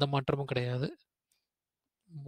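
A man's voice speaking for about the first second, then it cuts off into digital silence.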